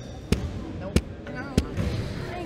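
Three sharp knocks, evenly spaced about two-thirds of a second apart, with faint voices between them.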